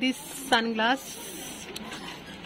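A woman's voice speaking a single short word, opening with a drawn-out hiss.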